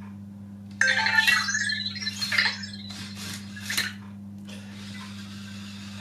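Anki Vector robot's electronic chirps and warbling beeps from its small speaker, starting about a second in, followed by a few small clicks and its motors working as it turns around on its treads. A steady low hum sits underneath.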